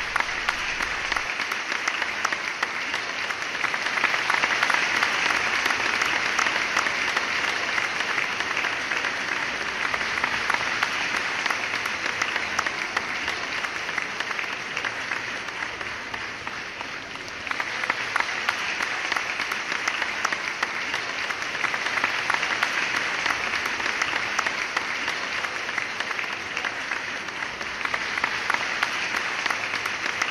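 Applause from a crowd, dense steady clapping that eases off a little just past halfway and then picks up again.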